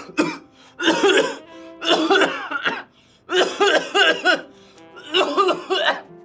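Four loud, hoarse bursts from a man's voice, each about half a second to a second long and about a second apart, over soft background music.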